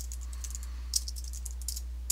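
Typing on a computer keyboard: a few short runs of light keystroke clicks as a folder name is keyed in.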